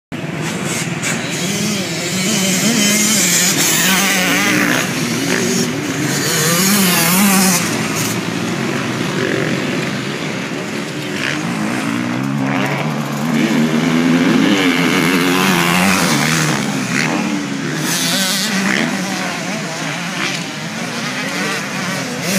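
Motocross dirt bike engines revving hard on the track, their pitch repeatedly rising and falling with throttle and gear changes. They grow louder twice as bikes pass closer.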